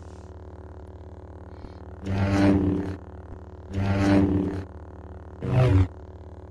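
Lightsaber sound effect: a steady electric hum with three loud swing swooshes about two, four and five and a half seconds in, the last one shortest.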